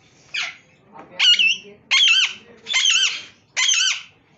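A parakeet calling: five loud, harsh screeches, the first a quick falling sweep, then four calls that rise and fall in pitch, a little under a second apart.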